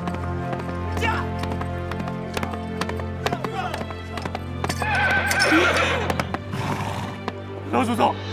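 Horses' hooves clattering irregularly, with a horse whinnying in a wavering, falling call about five seconds in, over background music with steady held tones.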